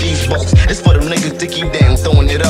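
Hip hop beat with a steady deep bass and kick drum hits, a rapped vocal running over it.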